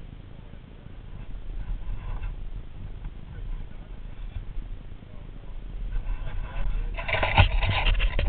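Low, steady rumble of a dirt bike's engine idling. About seven seconds in it is joined by louder voices and a few sharp knocks.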